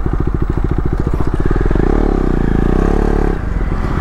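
KTM Duke 250's single-cylinder engine running at low road speed, its firing pulses steady, with the revs rising and falling once in the middle.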